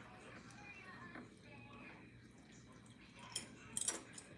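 Quiet room with a faint background voice or music in the first part, and two short, sharp clicks near the end.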